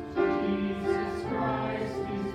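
A group of voices singing a slow hymn, notes held and changing pitch about every half second.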